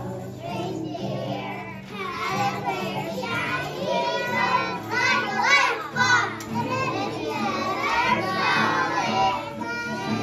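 A group of young children singing together, high and uneven, over steady musical accompaniment.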